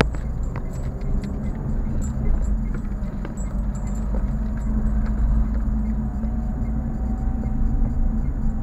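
Steady low engine and road rumble of a car driving, heard from inside the cabin, with scattered light clicks and rattles.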